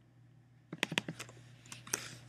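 Computer keyboard keys and mouse buttons clicking: a quick, uneven run of sharp taps that starts a little under a second in.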